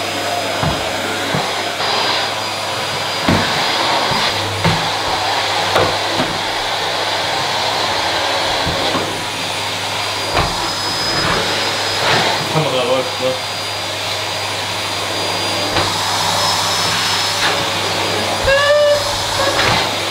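Canister vacuum cleaner running steadily with a constant motor hum and a thin high whine, with occasional short knocks as it is worked over a tiled floor.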